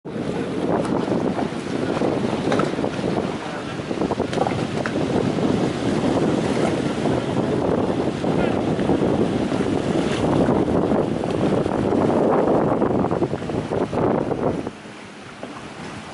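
Wind rushing over the microphone, mixed with the steady running of a small open motor launch crossing choppy water. The noise drops off sharply near the end.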